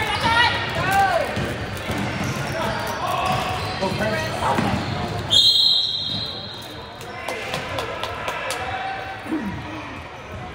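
Basketball game sounds on a hardwood gym floor: the ball bouncing, sneakers squeaking and voices echoing in the hall. About five seconds in, a referee's whistle blows once, briefly and sharply, to call a foul.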